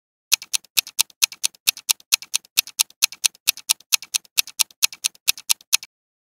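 Countdown-timer clock-ticking sound effect: quick, sharp ticks, about five a second, alternating louder and softer, starting a moment in and stopping shortly before the end.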